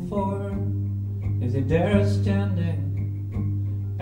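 Live band playing a song: guitar over a steady bass guitar line, with a long held melody note that slides up and back down about two seconds in.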